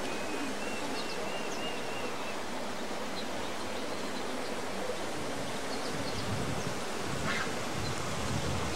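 Steady, even outdoor hiss throughout, with a faint series of short high chirps in the first two seconds or so.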